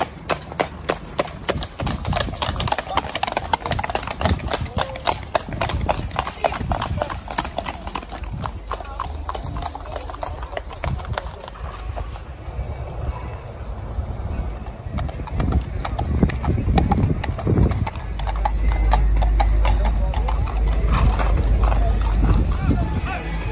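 Horses' shod hooves clip-clopping on a tarmac road as several horses trot past pulling traps and carts, in fast, dense strikes through the first half that thin out later. A heavy low rumble comes in over the last few seconds.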